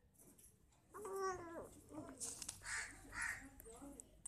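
A baby's short pitched coo about a second in, rising then falling, followed by softer babbling sounds.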